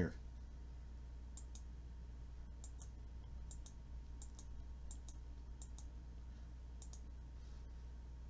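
Computer mouse button clicked repeatedly to step through image frames: about a dozen faint clicks, many in quick pairs, starting about a second and a half in, over a low steady hum.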